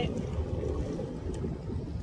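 Wind buffeting the microphone outdoors: a gusty low rumble without any clear tone.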